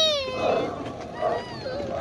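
Recorded dinosaur sound effect from a life-size animatronic Dilophosaurus model. A long, high, wavering cry fades out just after the start, then gives way to a rough, hissing growl.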